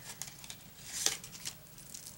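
Soft rustling of a small paper packet being opened by hand, with scattered light ticks and a brief louder rustle about a second in.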